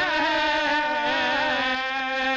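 Reedy temple pipe music of the nadaswaram kind: a long-held, buzzy melody note with small ornamental bends, over a steady drone.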